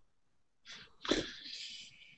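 A single short burst of a person's breath noise, starting about two-thirds of a second in, with a brief voiced catch and trailing off in a hiss.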